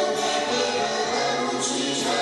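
A woman and a girl singing through microphones over musical accompaniment.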